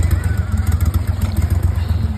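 Tiller-steered outboard motor running steadily, a rapid low throb.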